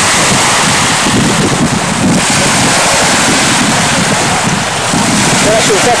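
Wind buffeting the microphone over the steady wash of small waves breaking on a sandy shore.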